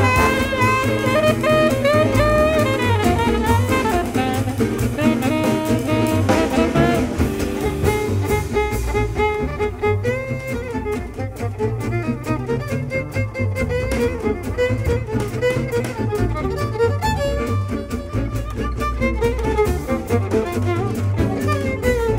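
Gypsy jazz big band playing: full horn section of saxophones, trumpets and trombones over rhythm guitars, double bass and drums. About eight seconds in the ensemble thins to a lighter passage over the steady rhythm section.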